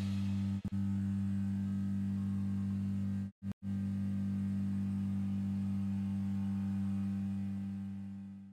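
A steady low electrical-sounding hum of a few stacked low pitches. It cuts out briefly just under a second in, then twice in quick succession around three and a half seconds, and fades away near the end.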